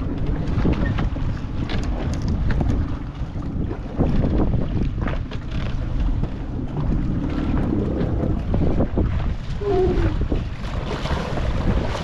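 Wind blowing across the microphone and sea water washing against a small wooden fishing boat at sea, over a low steady rumble, with scattered knocks.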